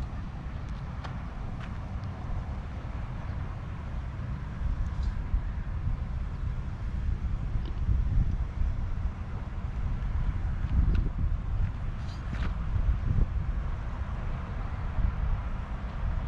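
Outdoor ambience: wind rumbling on the microphone in uneven gusts, over a faint wash of distant road traffic.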